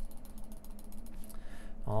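A computer mouse clicking: a quick run of small ticks over about the first second.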